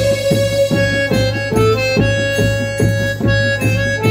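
Live band music: an electronic keyboard holds a sustained lead melody over a steady drum beat of about three hits a second.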